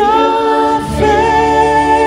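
A man singing into a handheld microphone, holding one long high note after sliding up into it; the note breaks briefly about a second in and is then held steady again.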